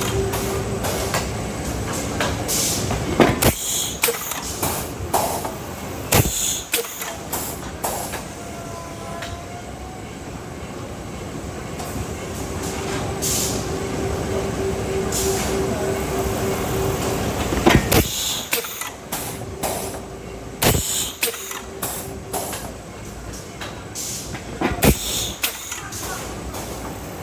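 Automatic greyboard production line running: its belt conveyors and stacker make a steady mechanical rumble, with a humming tone that comes and goes. Sharp clacks break in every few seconds.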